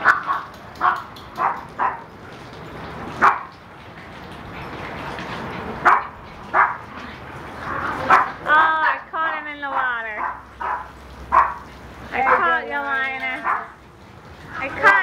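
Dogs barking in repeated short barks spread through the whole stretch, with longer wavering whine-like calls about halfway through and again near the end.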